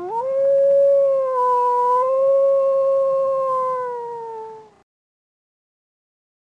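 A single long wolf howl, about five seconds: it sweeps up sharply at the start, holds a near-steady pitch with a slight dip in the middle, then sags a little and stops.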